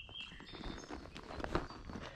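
A horse's hoofbeats on a dirt woodland track, irregular steps as it walks and turns, one knock louder about one and a half seconds in.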